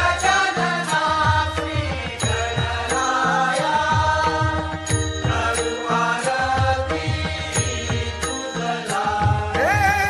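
Hindu devotional song: a sung melody over a steady low drum beat, with repeated metallic bell-like strikes.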